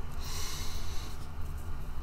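A man's noisy breath through the nose, a rush of air about a second long that then fades.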